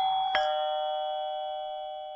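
Two-note ding-dong chime: a note already ringing, a second, lower note struck about a third of a second in, then both ringing on and slowly fading.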